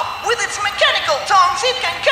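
High-pitched, squeaky cartoon character voices chattering without clear words, over background music.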